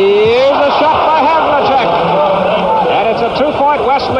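Voices over hissy old broadcast audio: a long rising vocal sound, then a quick run of short rising-and-falling vocal sounds.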